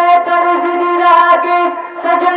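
A man singing a naat through a microphone, holding one long steady note, with a brief dip near the end.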